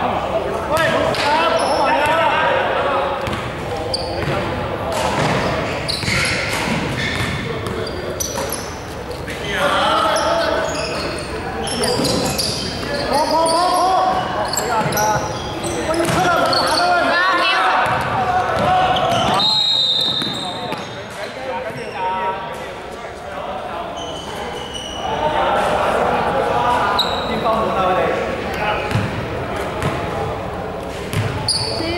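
Basketball bouncing on a hardwood gym floor during play, with players' voices calling out, all echoing in a large sports hall.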